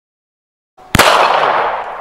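A sudden sharp bang about a second in, followed by a fading crash of breaking glass, as incandescent light bulbs burst.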